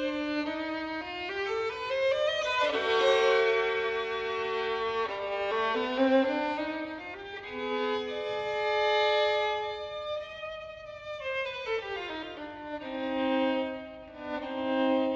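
Unaccompanied solo violin playing a classical passage: quick runs that climb and fall, with longer held notes between.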